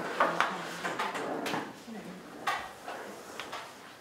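Folded paper being handled and worked by hand: a series of sharp clicks and rustles, spaced irregularly.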